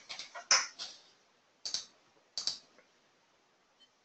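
A few sharp clicks of computer keys and a mouse while a value is typed into a trading-platform settings field: a small cluster at the start, a louder click about half a second in, then two more clicks under a second apart.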